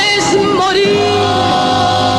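A vocal group singing a tango in close harmony over a small band, with several voices wavering with vibrato about half a second in, then settling into a long held chord.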